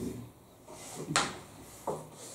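Two short knocks in a quiet room: a sharp one about a second in and a softer one near the end.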